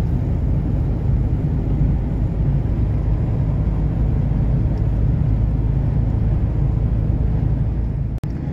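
Truck cab noise while cruising on the highway: the steady low drone of the truck's diesel engine mixed with tyre and road noise, with no change in speed or load.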